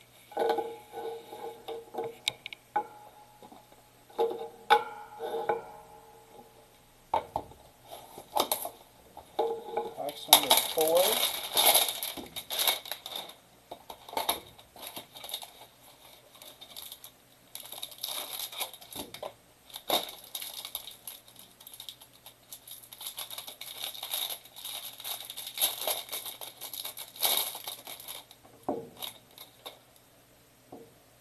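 Hands tearing open a trading-card hanger box and crinkling its packaging, in irregular bursts of ripping and rustling. The loudest tearing comes about a third of the way in, with more crinkling through most of the second half.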